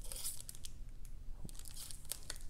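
Faint, scattered clicks and rustles of Upper Deck all-metal Michael Jordan trading cards being fanned out and slid against one another in the hands.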